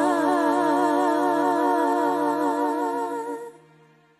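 A female vocal trio singing in close harmony, holding a final chord with vibrato that stops about three and a half seconds in and dies away quickly.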